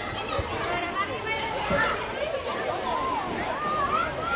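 Several people's voices talking and calling at once, overlapping and indistinct, with no clear words.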